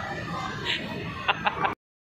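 Background noise of a busy indoor hall, with a few short, sharp sounds in the second half. It cuts off suddenly near the end.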